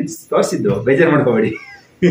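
Speech: a person's voice, talking in short bursts, with a brief high gliding vocal sound about one and a half seconds in.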